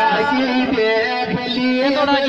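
Live Rajasthani Meena folk music through a stage sound system: a melody of held, bending notes.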